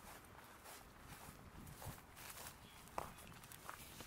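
Faint footsteps of a person walking across a yard, a few soft steps in the second half over near-quiet background.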